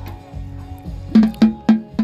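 A young child striking a snare drum on a drum kit with drumsticks: four loud, uneven hits beginning about a second in, each with a short ringing tone.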